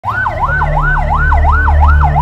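Ambulance siren sounding a fast rising-and-falling wail, about three sweeps a second, over a steady low rumble.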